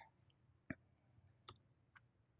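Near silence with a few faint, short clicks, the clearest about half a second and a second and a half in.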